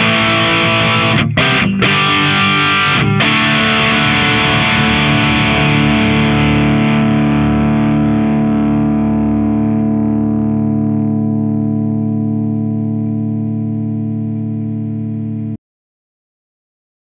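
Distorted electric guitar through a Marshall head and cabinet, its humbucker fitted with a thick ceramic 8 magnet, played as a tone demo. A few quick chord strikes in the first three seconds, then one chord left to ring and slowly fade until it cuts off abruptly near the end.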